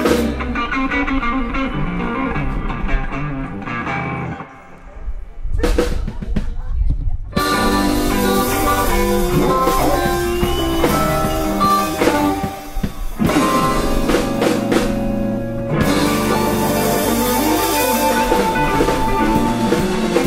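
Live blues band playing an instrumental passage: electric guitars, bass and drums, with a harmonica. About four seconds in the band drops to a quiet low stretch, then comes back in full about three seconds later.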